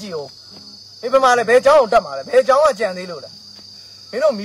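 A steady, high-pitched insect drone from crickets or cicadas runs without a break, heard most clearly in the pauses before and after a stretch of a man talking.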